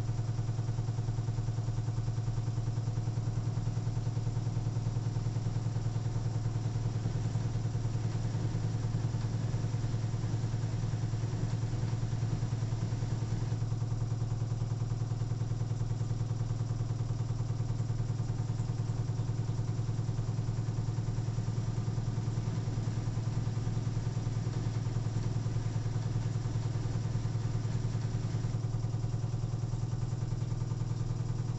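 LG AiDD inverter direct-drive washing machine in an intermediate spin at 1100 rpm: a steady low motor-and-drum hum that holds an even pitch.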